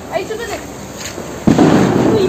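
Diwali fireworks going off: low noise with faint voices at first, then a sudden loud burst of noise about one and a half seconds in that carries on to the end.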